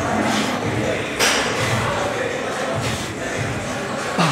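Gym ambience: background music and people talking, with a single sharp clank a little over a second in.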